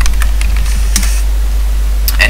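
Typing on a computer keyboard: several quick key clicks, most of them in the first second, over a steady low electrical hum.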